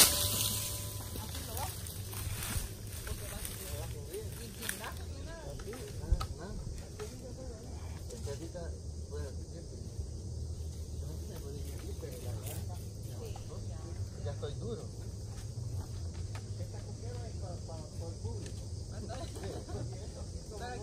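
Wind rumbling on the microphone, with faint distant voices and one sharp knock about six seconds in.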